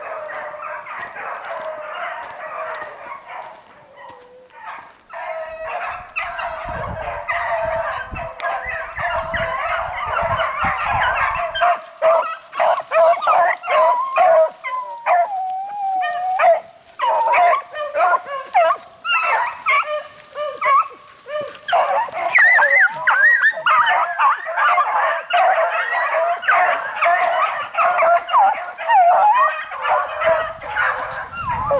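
A pack of beagles baying as they run a cottontail rabbit on its scent trail, many voices overlapping without a break. The chorus grows louder about twelve seconds in.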